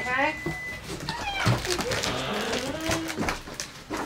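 A dog whining in several high cries that bend up and down: a rising one at the start, another about a second in, then a longer, lower wavering whine.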